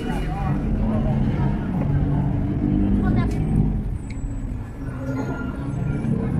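Voices of a market crowd over a steady low rumble of a car running slowly close by, a taxi creeping through the crowd.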